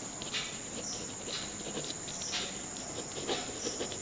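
Pen scratching across paper in short, irregular strokes while writing, over a thin steady high whine.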